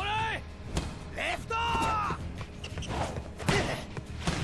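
Animated volleyball match sound: a player shouts a short call at the start, a second, longer call follows about a second and a half in, and thumps of the ball being hit, the loudest near the end, over background music.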